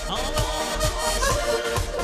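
Button accordion playing a melody over a dance backing track with a steady beat.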